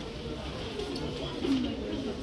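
Indistinct chatter of shoppers in a busy store, with a short, low, voice-like hum about one and a half seconds in.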